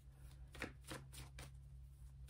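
Tarot cards being shuffled by hand: a quiet string of quick, irregular card flicks.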